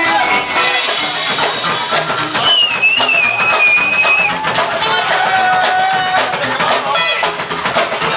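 Rockabilly band playing live with drums and guitar, an instrumental stretch without singing. A high held note with a slight waver rings out for under two seconds about two and a half seconds in.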